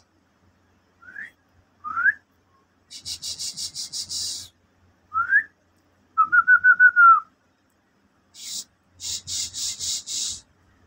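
A person whistling to call a dog: short rising whistle notes and a warbling trill, mixed with rapid runs of hissing 'shh' sounds. Two rising whistles come early, a hissing run follows, then another rising whistle and a trill, with more hissing near the end.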